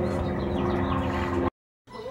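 Outdoor background: a steady mechanical hum with a few short, falling bird chirps over it. It cuts off abruptly about one and a half seconds in.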